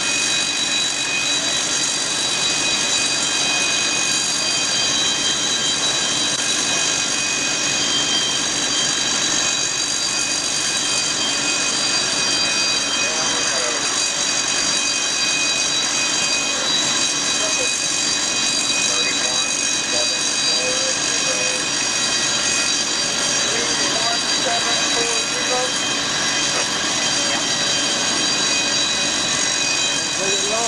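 High-expansion foam generators running during a foam discharge: a steady, loud rushing noise carrying several unchanging high-pitched whines.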